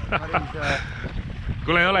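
Wind rumbling on the microphone on an open boat, with a few short spoken fragments early on and a man talking again near the end.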